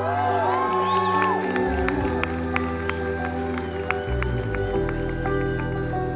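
Live country band playing a slow passage: plucked acoustic guitar and banjo notes over long held chords.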